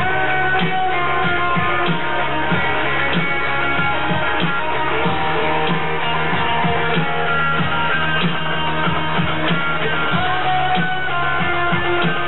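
Live ska-rock band music, with an electric guitar played over a steady beat and no vocals.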